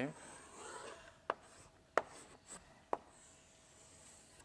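Chalk writing on a blackboard: a faint scratching stroke, then three short sharp taps about a second apart, with light scraping between them.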